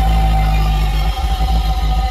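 Loud music with heavy bass, played on a car's sound system and heard inside the cabin.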